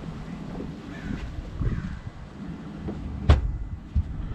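Wind buffeting the microphone: an uneven low rumble outdoors. A single sharp knock a little after three seconds in is the loudest sound.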